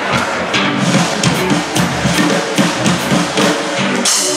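Live band playing through a PA, the drum kit prominent with electric guitars and keyboard.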